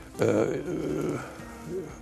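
A man's voice holding a drawn-out, low hesitation sound mid-sentence, fading after about a second.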